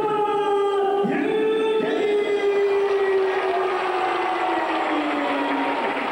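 Wrestling crowd: fans calling out in long drawn-out shouts, one voice held for several seconds and slowly falling in pitch over other voices.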